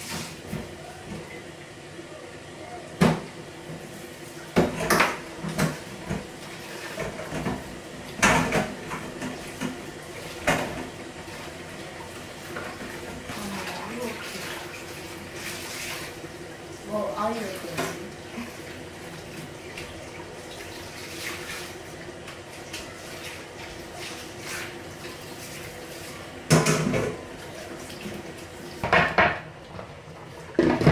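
Pots, dishes and utensils clattering in a stainless-steel kitchen sink while the tap runs, with sharp metallic clinks and knocks every few seconds over the steady sound of running water.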